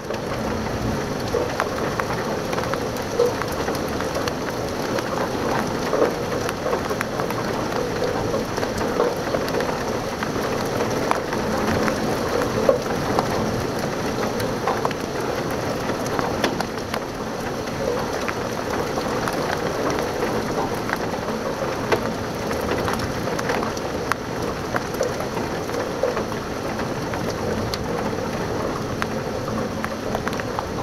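Heavy rain from a supercell thunderstorm falls steadily, with many sharp drop taps against the window glass.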